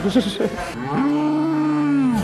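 A cow mooing: one long, steady moo that starts almost a second in.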